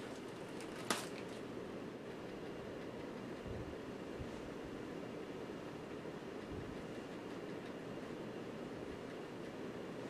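Steady low room hum with a single sharp click about a second in and a few soft low thumps in the middle: handling noise as a suit jacket is put on over a nylon shoulder holster rig.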